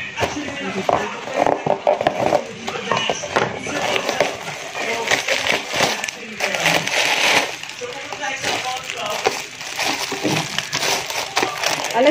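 Plastic packaging wrap crinkling and crackling irregularly as it is pulled and peeled off a plastic container by hand.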